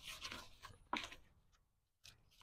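Faint scraping and rustling of gloved hands digging into potting soil around a turmeric plant: two short bursts, one at the start and one about a second in.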